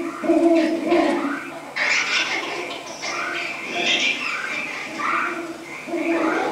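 Soundtrack of a TV clip playing through a room's speakers: a busy jumble of sound with a few held low tones early on, then short rising-and-falling cries about once a second.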